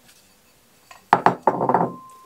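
Hard small objects clinking as they are handled on a desk: a few sharp clinks about a second in, then a half-second clatter that ends in a brief ringing tone.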